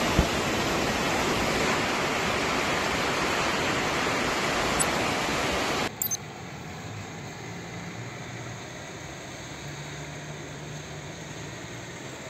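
Loud steady rushing of floodwater. About halfway through it cuts to a quieter rushing hiss with a faint low engine hum from traffic on the flooded road.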